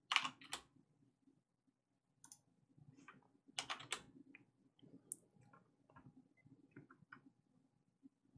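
Faint, scattered clicks of a computer keyboard: two near the start, a cluster in the middle, then a few lighter ticks.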